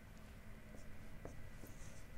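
Dry-erase marker writing on a whiteboard: faint short strokes and light taps as numerals are written.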